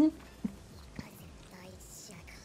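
A voice cuts off at the very start. After that it is mostly quiet, with faint whispered speech and two small clicks, about half a second and a second in.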